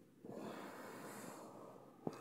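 A person's faint, breathy exhale lasting most of a second and a half, starting about a quarter second in.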